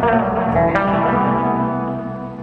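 Solo electric bass guitar played through effects pedals: plucked notes ringing over a held low note, with a sharp new note struck about three-quarters of a second in.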